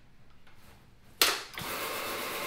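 Counter-rotating brush (CRB) floor machine switched on about a second in with a sudden loud start, then running steadily as its brushes agitate the pre-sprayed tile and grout.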